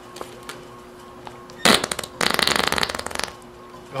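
Rubber whoopee cushion squeezed flat by hand: a short blast, then a rapid rattling fart noise lasting about a second.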